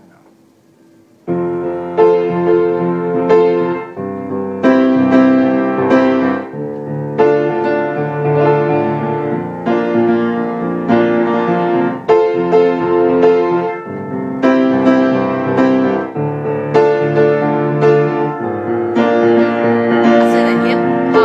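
Piano playing a slow, repeating pattern of block chords, starting about a second in; each chord is struck and held for a second or two before the next.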